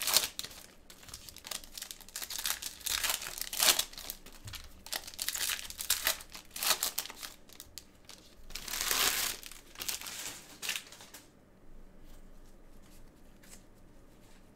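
Foil wrapper of a 2020 Select Football card pack crinkling and tearing as it is pulled open by hand, in irregular crackles with one longer tear about nine seconds in. It goes quieter after about eleven seconds, leaving a few faint ticks.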